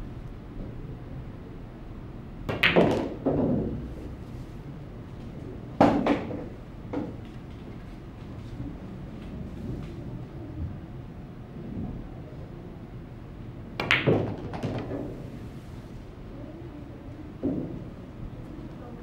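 Pool balls being struck: a few separate clusters of sharp clicks from the cue tip and balls knocking together, several seconds apart, as balls are pocketed, over a low steady room hum.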